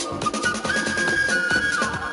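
Live flute over an electronic backing track with conga drums. About halfway through, the flute holds one long high note that bends down as it ends.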